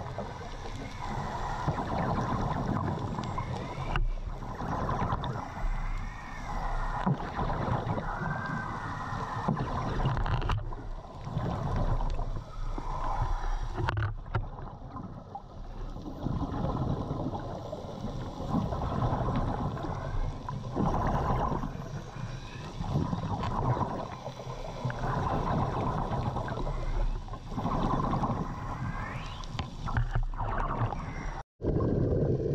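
Underwater sound of a scuba diver's breathing, with exhaled air bubbles gurgling in swells every two to three seconds over a steady low hum.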